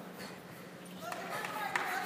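Indistinct background voices of wrestling spectators, over a steady low hum. From about halfway through, the murmur grows louder and a few sharp smacks cut through it.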